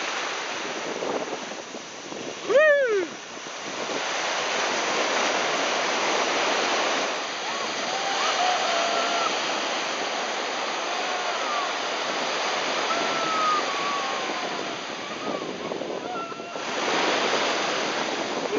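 Small waves breaking and surf washing in, a steady rushing of water. About two and a half seconds in, one short loud cry rises and falls in pitch, and fainter short calls come over the surf later on.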